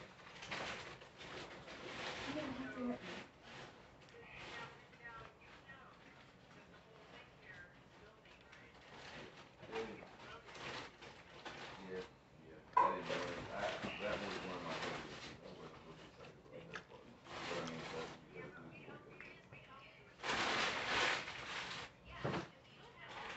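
Indistinct voices talking in the background, with no clear words, coming and going in patches.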